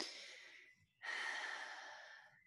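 A person breathing audibly close to the microphone: two breaths, the second a longer, louder, sigh-like exhale starting about a second in.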